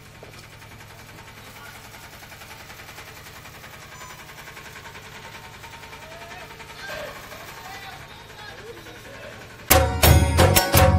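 Faint voices over a steady low hum, then, just before the end, loud procession music with drum beats and singing starts suddenly.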